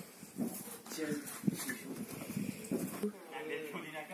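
Indistinct voices talking quietly, with a few light knocks.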